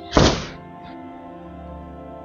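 One short thud from the silk saree being handled and flipped open, just after the start, over steady background music.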